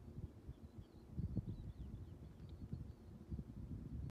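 Wind buffeting the microphone outdoors, a low, gusty rumble that rises and falls, with a few faint, brief bird chirps high above it.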